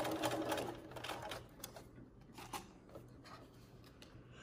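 Domestic sewing machine stitching rickrack trim onto a cloth diaper in a fast run of needle strokes for about the first second and a half. It then dies down to a few faint, sparse clicks.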